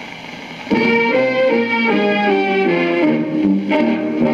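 Old-time dance band playing a waltz quadrille from a phonograph record, striking up suddenly under a second in with several instruments playing the tune.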